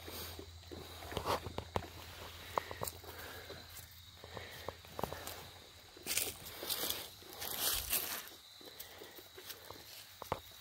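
Soft rustling and small crackles of dry fallen leaves and grass as a puppy sniffs and steps about in them. There are scattered light clicks throughout, and a few louder rustling bursts a little past the middle.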